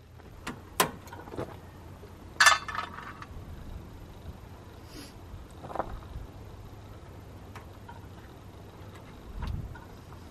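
Scattered sharp clicks and a brief clinking rattle about two and a half seconds in, from hands working small plastic liquid-fertilizer orifices and fittings on a planter row unit, with a low thud near the end.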